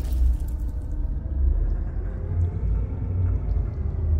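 Deep, steady low rumble of an intro sound effect, swelling and easing in slow pulses, left over after a boom-and-shatter hit.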